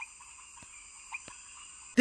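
Faint ambience: a steady high-pitched insect-like drone, with a few short soft chirps and clicks.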